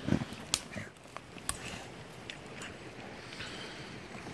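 Pit bulls sniffing the ground: a short low sound from a dog right at the start, then several sharp clicks and ticks over a steady hiss.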